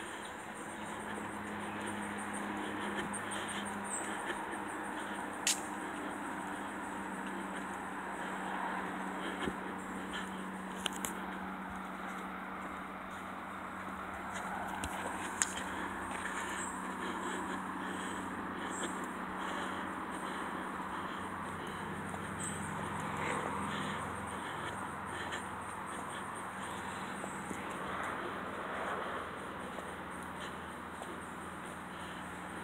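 Outdoor neighbourhood ambience: a steady, high, pulsing insect trill over a low steady hum, with a few sharp clicks.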